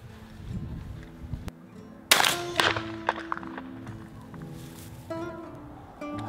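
Acoustic guitar music begins about two seconds in with a sharp, loud hit that rings away, then continues as sustained plucked notes. Before it, a low background rumble cuts off abruptly.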